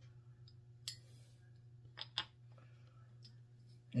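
Metal beer bottle caps clicking lightly as they are handled and pressed into holes in a wooden plaque: a few faint clicks, one about a second in and two close together around two seconds, over a low steady hum.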